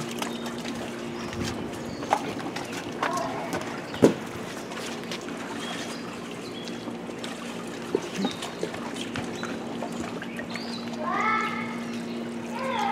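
Plastic of an inflated water-walking ball being knocked and rubbed as a child slides and scrambles inside it on the pool, with water sloshing. Scattered thumps, the loudest about four seconds in, over a steady low hum.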